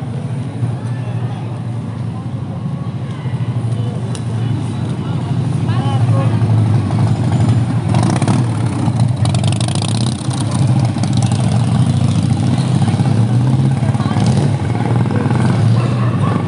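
Motorcycle engines running low as motorcycles ride slowly past, getting louder from about six seconds in, over the voices of people on the street.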